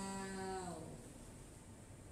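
A woman's voice holding one long, steady-pitched vowel that fades out a little under a second in, followed by a quiet room.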